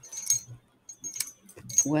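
A few light metallic clinks and jingles, spaced roughly half a second apart, each with a brief high ring, like small metal pieces knocking together. A woman's voice starts speaking at the very end.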